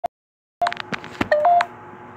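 Electronic beeps and clicks from a ghost-hunting phone app, like phone dialing tones: a brief blip, a moment of silence, then a quick run of clicks and short beeps ending in two steady tones, one just lower than the other.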